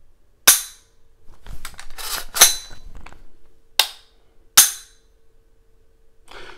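AR-15 mil-spec trigger being dry-fired on an Anderson AM15 rifle: a sharp metallic click of the hammer falling, then the action racked to recock it with a quick run of metal clacks, then two more sharp metallic clicks.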